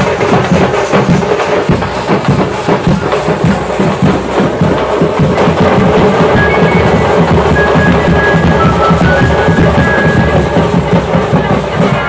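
Loud, fast, continuous drumming with music, dense drum strokes with no pause. A few short, high held tones sound over it in the second half.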